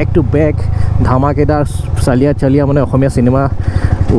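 A man talking over the low, steady running of a Yamaha R15M's single-cylinder engine. The engine's pulses become distinct near the end as the motorcycle slows.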